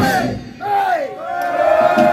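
Crowd at a punk gig shouting together: a short call, then from about half a second in one long held yell by many voices, with little of the band's instruments heard.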